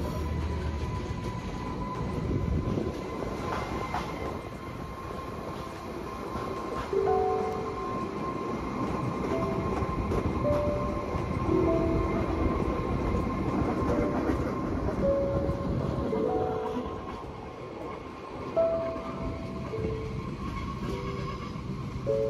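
Rigi rack-railway train climbing the mountain: a steady running rumble with a thin, constant high tone over it, heard from the carriage window. From about seven seconds in, quiet background music adds short notes at several pitches over the train noise.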